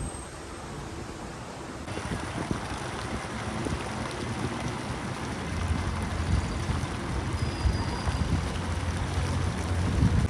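Water from an outdoor fountain's arcing jets splashing steadily into its basin, a constant rushing patter that comes in about two seconds in.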